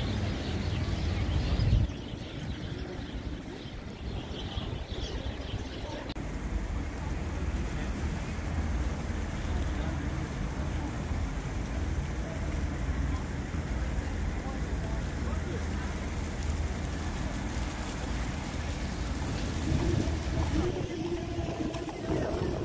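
Outdoor city street ambience: passing traffic and the voices of people around, over a heavy uneven low rumble of wind on the microphone. The sound changes abruptly about 2, 6 and 21 seconds in.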